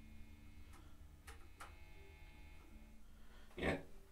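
A few notes picked softly on a Vintage V52 Telecaster-style electric guitar through a small amp, each left to ring. The pickup setting sounds weak, which the player puts down to a wiring quirk.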